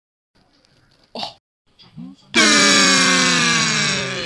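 Cartoon voice sound effects for an animated letter: two short vocal noises, then, about two and a half seconds in, a loud, long blare that slowly falls in pitch.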